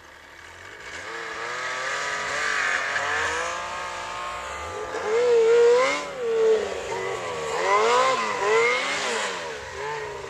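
Ski-Doo snowmobile engine revving hard in deep snow, its pitch swinging up and down again and again as the throttle is worked. It builds from faint at the start and is loudest in the second half.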